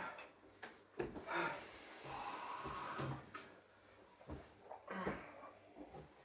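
Heavy, breathy puffing and wheezing from a man whose mouth is burning from a Trinidad Scorpion Butch T chilli, with a few light knocks and clatters from the kitchen. A hiss lasting about a second comes about two seconds in.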